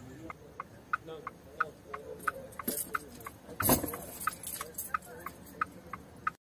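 A car's electronic warning chime pipping steadily, about three short pips a second. A brief loud bump comes about three and a half seconds in.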